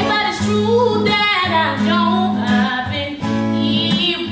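A woman singing a soulful melody with gliding vocal runs, backed by a strummed acoustic guitar.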